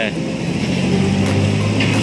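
A motor vehicle's engine passing by, a low hum that swells around the middle and eases off, with a voice starting at the very end.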